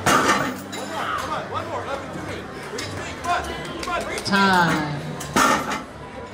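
Voices talking in a large echoing hall, with sharp metallic clanks from the weight plates and metal handle, one right at the start and another about five and a half seconds in.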